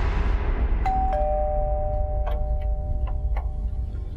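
Two-tone doorbell chime: a higher note, then a lower one a moment later, both ringing on for about two and a half seconds. Underneath is a low drone of background music with a few light ticks.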